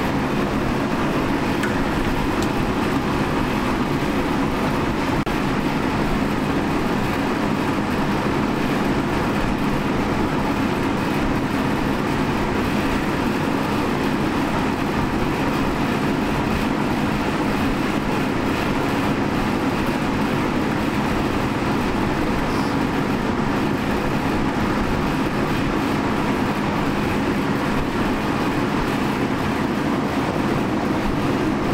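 A large drum fan running steadily: a constant rushing noise with a low hum.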